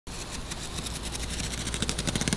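Packing tape being pulled off a cardboard box: a rapid run of small clicks that grows denser toward the end, over a low steady hum.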